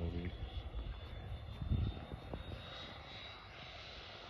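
Thin, steady high whine of a radio-controlled HSD L-39 model jet's electric ducted fan flying at a distance, edging slightly higher near the end, with a brief low rumble about two seconds in.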